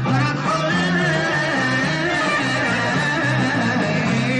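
A male singer singing a Hebrew Mizrahi song live into a microphone over a band, with a bass line and guitar, and a long note held through most of the passage.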